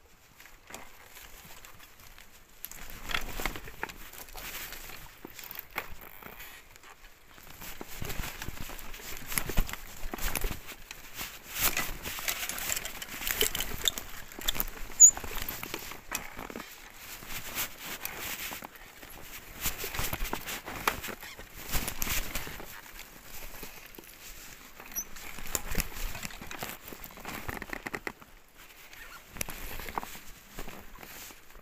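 ICE Adventure recumbent trike rolling down a rough dirt trail: tyres crunching over dirt, stones and roots, with the frame and drivetrain rattling in uneven surges as the ground gets rougher.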